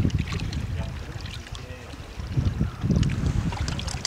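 Wind buffeting the microphone in uneven gusts, strongest at the start and again past the halfway point, with small waves lapping and splashing against the shore rocks.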